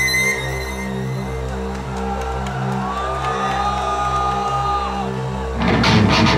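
Live heavy metal keyboard passage: held synth lead notes over a pulsing low synth chord. About five and a half seconds in, the full band comes in loud with distorted electric guitars and drums.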